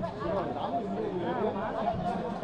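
Speech only: a man talking into reporters' microphones, with other voices chattering in the background.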